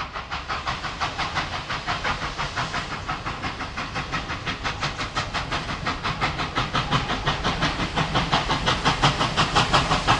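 NSWGR 59 class 2-8-2 steam locomotive 5910 working hard, its exhaust chuffing at about four to five beats a second as it pulls a train. The chuffs grow steadily louder as it approaches.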